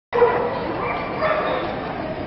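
A small dog barking a few short times, the loudest near the start, over voices in a busy hall.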